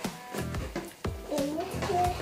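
Background music, with a single spoken word near the end.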